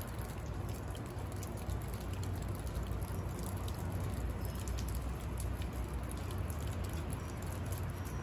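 Big snowflakes falling on garden plants and bark mulch, a soft steady patter of many faint ticks, over a low steady rumble.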